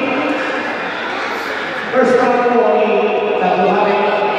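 Spectators' voices calling out in long, drawn-out shouts in a large sports hall, with a louder call starting about two seconds in.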